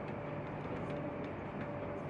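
Steady mechanical hum of a large industrial hall, with a constant mid-pitched tone over a low rumble, and a few faint clicks.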